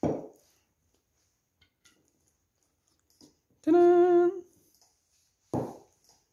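A man humming one short, slightly wavering 'mm' note, a little under a second long, about halfway through. A short burst of noise comes right at the start and another near the end.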